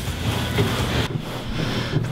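Cloth towel pressed and rubbed over a spilled drink on a tabletop: a rough rustling, scrubbing noise over a low rumble, thinning out about a second in.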